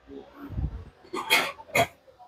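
A man's eating noises as he tastes food: a low hum of appreciation, then two short, sharp mouth smacks.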